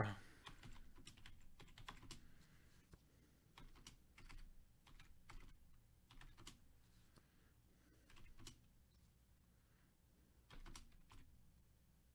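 Faint computer keyboard typing: irregular runs of short keystroke clicks with brief pauses between them.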